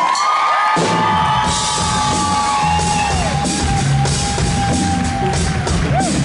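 Live rock band starting a song: drum kit and electric guitar kick in about a second in, with long held lead notes that bend at their starts and ends over the beat.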